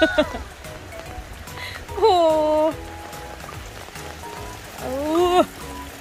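A young male Asian elephant urinating, a steady stream of urine splashing onto the dirt ground beneath it.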